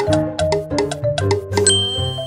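Background music with bright, bell-like notes struck one after another, and a high ding that comes in near the end.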